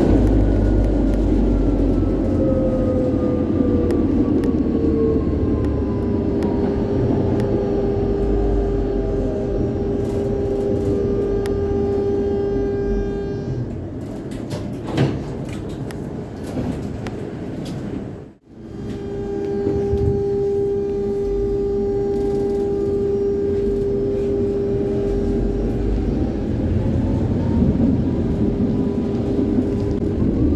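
Interior of a Warsaw tram in motion: a constant rumble under an electric traction-motor whine. The whine falls in pitch over the first few seconds as the tram slows, holds as a steady tone, and begins to rise again near the end as the tram picks up speed.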